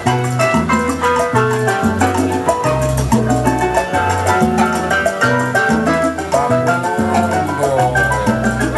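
Salsa music with a stepping bass line, piano and horn-like melody, and percussion keeping a steady beat.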